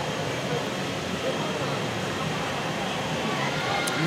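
Steady background noise with faint, indistinct chatter of voices.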